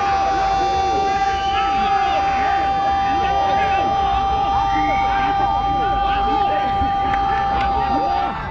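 Television commentator's goal call: one long held "gooool" on a steady high note for about eight seconds, after a short drop in pitch at its start. Crowd and players shouting in celebration underneath.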